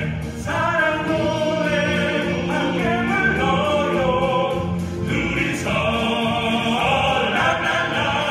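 Male vocal ensemble of five singing a Korean pop ballad in harmony through handheld microphones, in phrases with short breaths between them.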